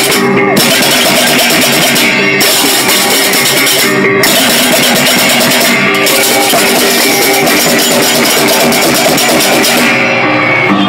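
Balinese baleganjur gamelan played in procession: dense, rapid clashing of many ceng-ceng kopyak hand cymbals over sustained ringing bronze gongs. The cymbals break off briefly about every two seconds, then resume.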